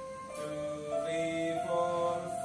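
Casio electronic keyboard playing single held notes one after another, stepping upward in pitch about every half second, as in a beginner's finger exercise.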